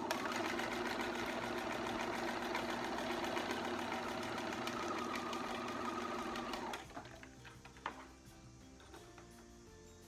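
Electric sewing machine running steadily, its needle stitching rapidly through 20-gauge clear vinyl under a Teflon foot, then stopping about seven seconds in. A single click follows about a second later.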